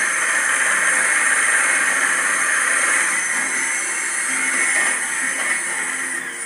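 Electric mixer whipping eggs and sugar in a glass bowl, a steady whirring hiss that holds even throughout, beating the mixture until it doubles in volume and lightens in colour. It is heard through a television's speaker.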